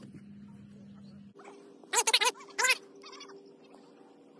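Two bursts of loud, pitched animal calls about two seconds in: a quick run of three, then one or two more. A steady low hum runs under them.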